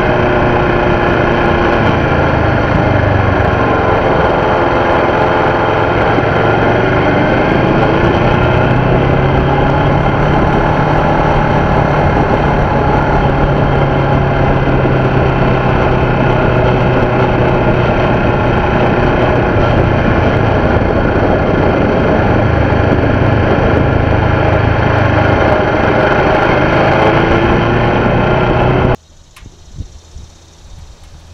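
Kawasaki Ninja 650R's parallel-twin engine running under way, heard from on board the moving bike, its pitch rising and falling with the throttle. It cuts off suddenly near the end.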